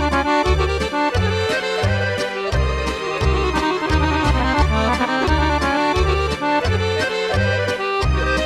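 Serbian kolo dance tune played on solo accordion: a fast, busy melody over a steady bass beat about twice a second.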